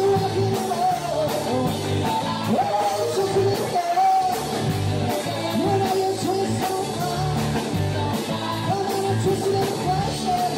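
Live band music: a man singing into a microphone over a strummed acoustic guitar, with a steady beat.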